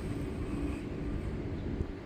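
Steady low rumble of open-air background noise with a faint, even hum underneath.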